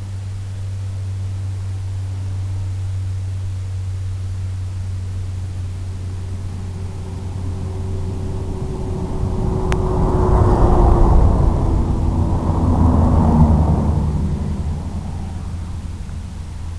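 Small FPV aircraft's electric motors and propellers whirring over a constant low hum, mixed with wind noise. The sound swells loudest for several seconds in the second half, with one sharp click near the middle.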